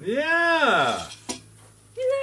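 A person's voice calling out in one long exclamation that rises and then falls in pitch, followed by a single short click.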